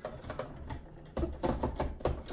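Repeated plastic clicks and knocks of a blender's top and jar being fiddled with as the top fails to lock on. Laughing comes in about a second in.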